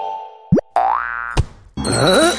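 Cartoon sound effects: a held tone fades out, then a quick upward zip about half a second in is followed by a rising, springy boing-like glide. A single sharp click comes near the middle.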